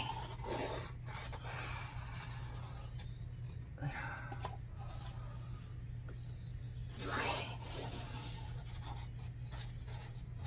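A short laugh, then several soft rubbing and scraping noises from paper cups being handled and lifted off a painted canvas, over a steady low hum.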